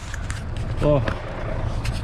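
A man briefly sings "la la" about a second in, over a steady low rumble and the rubbing and clicking of a handheld camera being jostled.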